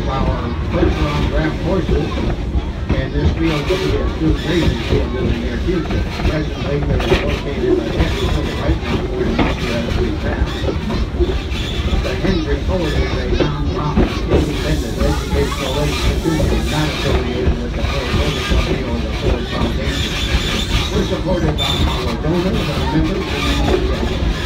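Ride noise of a steam train in motion, heard from the car just behind the locomotive: wheels clattering over the rails and the running train's steady din, with no let-up.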